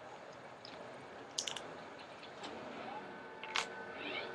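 Small plastic doll accessories being handled: a quick cluster of light clicks about a second and a half in, then single faint clicks near the middle and near the end, against quiet room tone.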